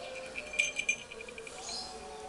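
A small bell on a cat's collar jingling in a quick run of rings about half a second in, as the cat is pushed about. A faint chirp near the end.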